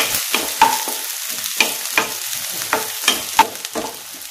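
Wooden spatula scraping and knocking against a nonstick frying pan as onion pieces fry in oil, sizzling faintly. The knocks are irregular, about two or three a second.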